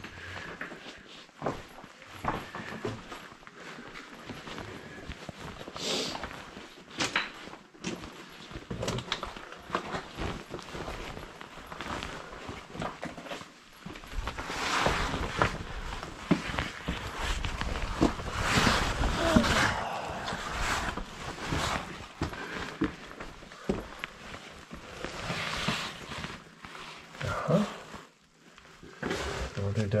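Scuffs, scrapes and knocks of boots, hands and clothing on rock as a person climbs and crawls through a narrow cave passage, with a louder stretch of scraping about halfway through.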